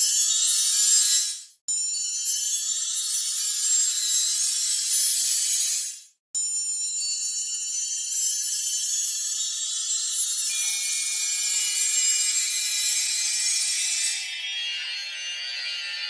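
Sampled metallic orchestral wind chimes playing glissandos that have been slowed way down by a time-stretch, smearing into a dense wash of high ringing tones. The sound cuts off suddenly twice, about a second and a half in and about six seconds in, and starts again each time.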